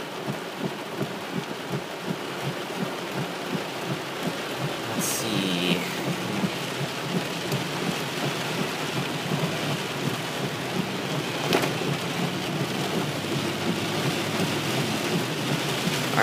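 Heavy rain drumming fast and steadily on a car's roof and windshield, heard from inside the car. About five seconds in there is a brief sound that falls in pitch.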